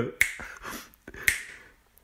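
A voice narrator's mouth clicks and breaths between lines while reading aloud: a sharp click with a short breathy hiss, then a second click and breath about a second later.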